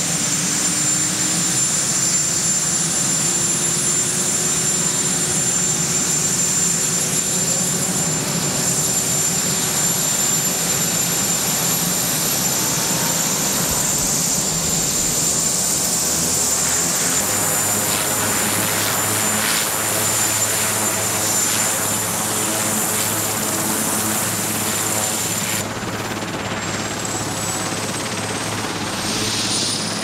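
Marine One, a Sikorsky VH-3D Sea King, starting up on the ground: a loud, steady turbine whine whose pitch glides upward as the engines spool up. From about halfway through, the sound of the rotor turning faster grows in underneath. Near the end the sound changes and a high whine climbs again.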